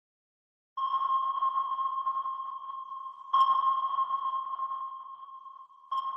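An intro ping sound effect: a ringing ping that sounds about a second in and again a couple of seconds later, each fading slowly, with a third beginning at the very end.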